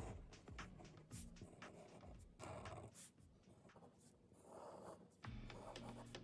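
Faint scratching of a fine-tip Sharpie marker drawing strokes on paper, in short runs. Quiet background music comes in more strongly near the end.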